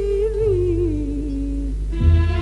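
Music: a long held melodic note with vibrato that falls in steps from about half a second in, fading near the end, over a steady bass.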